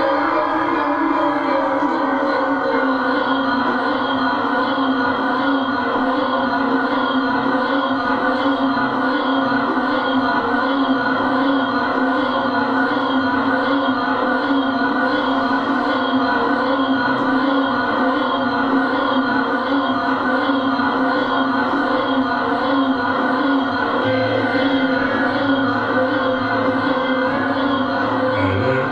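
Live experimental band playing a steady, dense drone of layered sustained tones from electric guitar, keyboard and electronics, with no beat and no voice.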